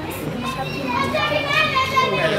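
A group of young people's voices talking over one another, getting louder toward the end.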